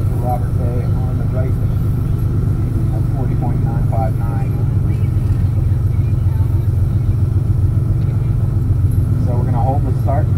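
1988 Porsche Carrera 3.2's air-cooled flat-six idling steadily, heard from inside the cabin. A public-address announcer's voice is faint in the background.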